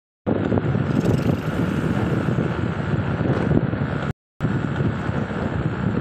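Steady rumble of a vehicle driving slowly on a paved road, with wind noise on the microphone. The sound cuts out completely for a moment about four seconds in, then resumes.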